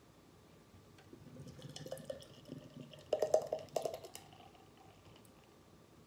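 Beer being poured from an aluminium can into a glass mug. It builds from about a second in to a loud run of glugs around three to four seconds in, then trails off.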